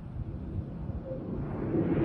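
Low outdoor rumble with wind buffeting the microphone, swelling louder and brighter near the end.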